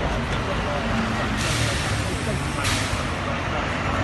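Street traffic noise with the voices of a crowd around. There are two sharp hisses: the first lasts nearly a second, about a second and a half in, and a shorter one follows a second later.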